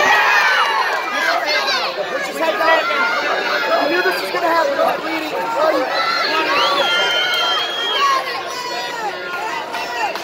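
Crowd of fight spectators shouting and cheering, many voices overlapping, with one voice holding a long high yell about seven seconds in.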